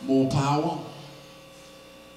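A man's voice is heard briefly at the start, then a steady electrical mains hum.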